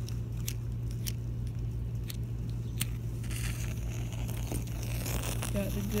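A few small sharp clicks, then a wooden match struck and flaring into a hissing burn from about three seconds in, over a steady low hum.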